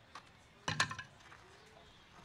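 Quiet ballpark ambience with one short, sharp click-like sound just under a second in.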